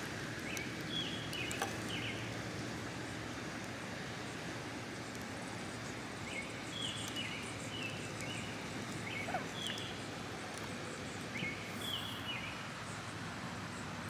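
Steady outdoor background noise with a bird calling in short, high chirps, in groups that recur several times. One or two faint clicks come from plastic action-figure parts being handled.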